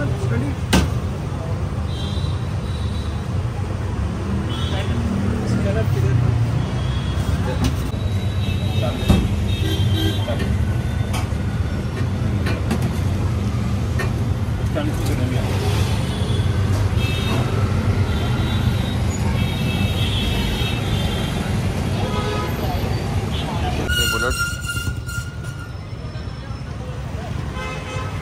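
Street traffic: a steady low rumble of passing vehicles with horns tooting again and again.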